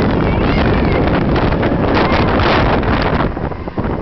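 Roller coaster train running along its track at speed, heard from on board, with heavy wind buffeting the microphone; the rush eases somewhat near the end as the train slows.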